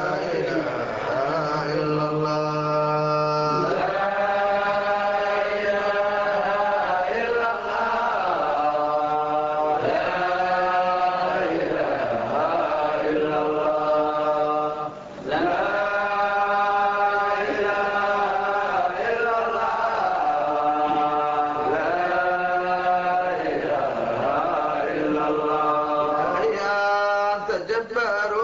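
Sufi devotional chanting (dhikr) of an Arabic religious ode, sung in long, drawn-out melodic phrases with short breaks between them.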